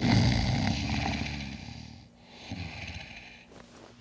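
A man snoring: one long snore that is loudest at its start and fades out, then a second, quieter snore about two and a half seconds in.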